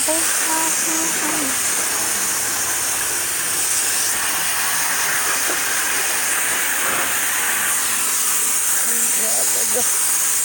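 Garden hose spray nozzle spraying water onto a wet dog and into a plastic kiddie pool of soapy water: a steady hiss of spray.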